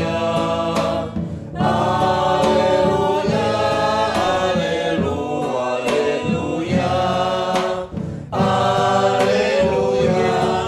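Small mixed church choir singing a hymn together, accompanied by acoustic guitar and a drum struck with sticks. The singing pauses briefly about a second in and again near eight seconds.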